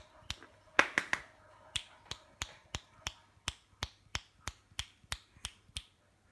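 A person making short, sharp clicks, a few irregular ones and then a steady run of about three a second, to call off two wrestling kittens.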